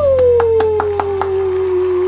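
A man's long, held 'woo' cheer that slides down in pitch and then levels off, with quick hand claps in the first second or so, over a sustained closing note of the backing music.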